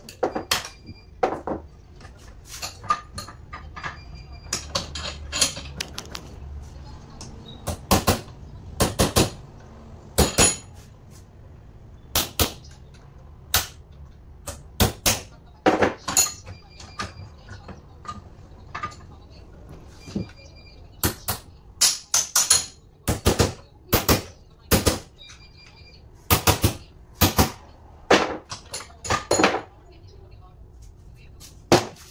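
Hammer blows on the metal parts of a truck starter motor held in a bench vise: dozens of sharp metallic knocks at an uneven pace, some ringing briefly.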